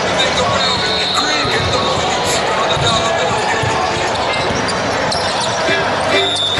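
Basketball bouncing on a hardwood gym court amid voices of players and spectators, with a thin high tone lasting about a second near the start.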